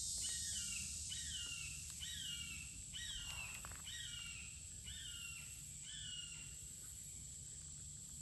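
Red-shouldered hawk calling in the background: a series of seven falling two-note 'kee-ah' screams, about one a second, ending about six seconds in.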